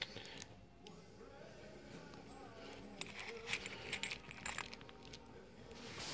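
Faint small metallic clicks and clinks of copper coin-ring pieces being handled, as a domed copper lid is set onto a copper coin-ring case, with a few sharp clicks between about three and five seconds in.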